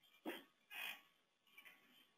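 Near silence, broken by two faint, short breaths near the microphone, about a quarter and three-quarters of a second in.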